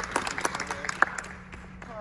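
Scattered applause from a small audience and the cast: many hand claps that thin out and fade about a second and a half in.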